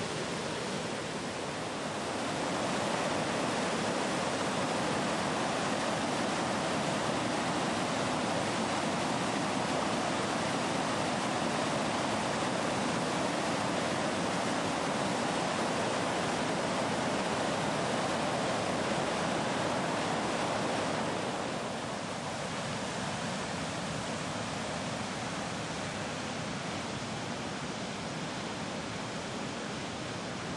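Floodwater rushing past in a steady, noisy roar, a little louder for most of the time and dropping slightly about two-thirds of the way through.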